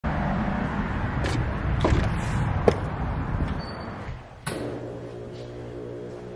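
Wind rumbling on the microphone, with several sharp clicks. About four and a half seconds in, a click and a cut lead into a steady, quieter held tone.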